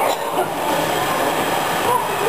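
Steady, loud babble of many children's voices and shouts echoing in a large indoor play area.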